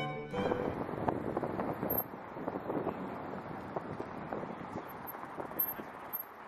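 Outdoor ambience of wind on the microphone over a low, steady hum of distant traffic, with scattered small clicks. Classical string-and-piano music stops right at the start.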